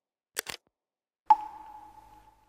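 Motion-graphics sound effects for an animated logo intro: a quick double click about half a second in, then a bright ding that rings out and fades over about a second.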